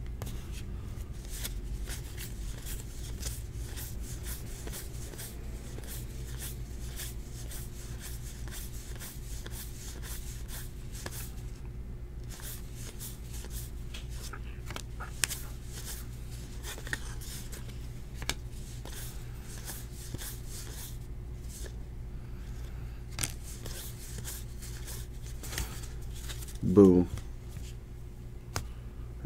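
Stack of baseball trading cards handled and flipped through one by one: a run of light card flicks and slides, over a steady low room hum. A short spoken word comes near the end.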